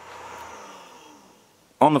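Anet A8 3D printer's fans running down as its power is cut: a steady hum with a faint falling whine fades away over about a second and a half.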